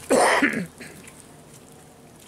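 One short, harsh throaty burst lasting about half a second, like a cough or someone clearing their throat, just after the start.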